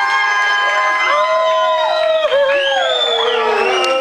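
Small crowd of voices cheering and whooping in long drawn-out calls, one call sliding down in pitch near the end.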